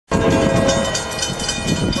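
A Nathan K5LA five-chime locomotive air horn sounding its chord, which fades about a second in and comes back strongly right at the end, over a low rumble.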